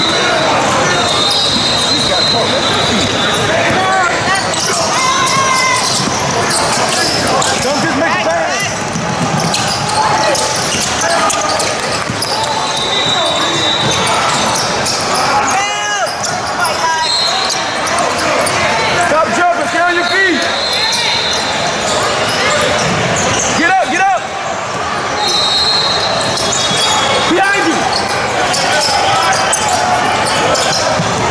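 Indoor basketball game: a ball bouncing on a hardwood court and several short high squeaks of sneakers, under constant echoing voices and occasional shouts from players and spectators.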